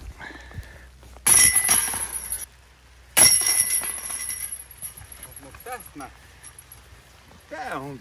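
Disc golf basket chains struck by flying discs: two crashes of rattling, ringing metal chain about two seconds apart, the second ringing out over about a second.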